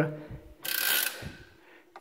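Bicycle drivetrain turned briefly by hand, with the chain running through a SRAM Force 1 rear derailleur's narrow-wide CeramicSpeed pulley wheels. It is a short whirring burst of about half a second that then fades out.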